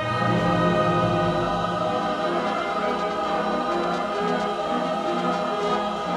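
High school choir singing held chords with a string accompaniment that includes cellos.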